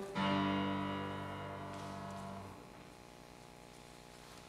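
Final chord of a song's piano accompaniment, struck just after the start and left ringing as it fades, then released about two and a half seconds in, leaving only faint room tone.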